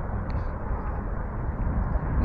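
Steady wind rumble buffeting the microphone while riding an electric bike at speed, with no distinct tone or event.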